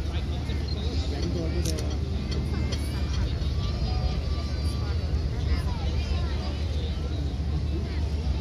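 A steady low rumble, like an engine or wind, runs under indistinct chatter of people talking in the background, with no clear words.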